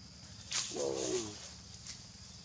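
A young macaque's short call: a noisy rasp about half a second in, then a pitched cry lasting under a second.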